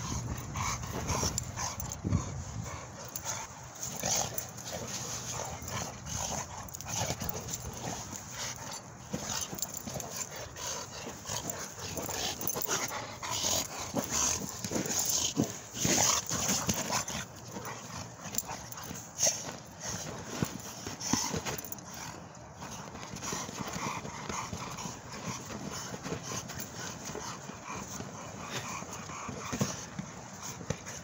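A dog playing rough with a large inflated ball, making dog noises as it pushes and bites at it. Irregular knocks and scuffs from the ball and paws on the dirt run through it.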